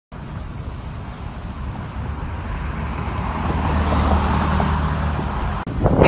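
Road traffic: a vehicle passes on the street, its engine and tyre noise swelling to a peak about four seconds in over a steady low hum. The sound breaks off briefly near the end.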